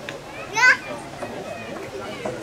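A toddler's short, high-pitched squeal about half a second in, with faint voices in the background.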